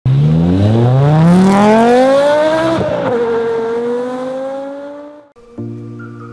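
A car engine accelerating hard, its pitch climbing, dropping at a gear change about three seconds in, then climbing again as it fades away. Near the end a steady music chord begins.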